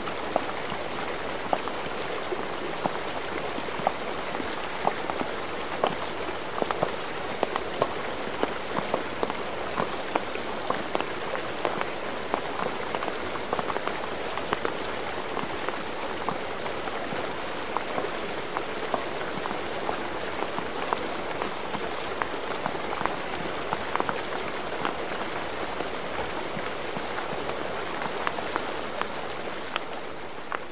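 Steady hiss of rain with a scattered patter of sharp drop clicks.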